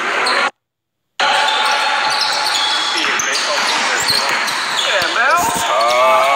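Basketball bouncing on a hardwood gym floor during a pickup game, amid players' voices. The sound cuts out completely for under a second shortly after the start, then resumes.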